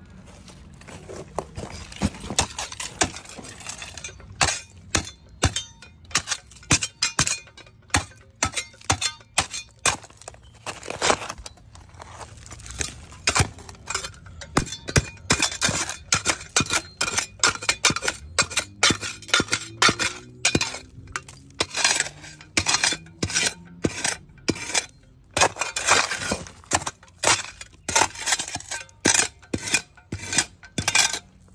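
A metal spade digging into soil and brick rubble at the foot of a brick wall, its blade scraping and clinking on stones in repeated sharp strikes, one or two a second.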